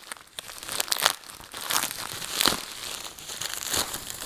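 A small white packaging bag being torn open and crinkled by hand: irregular rustling and crackling, with sharper rips about a second in and about two and a half seconds in.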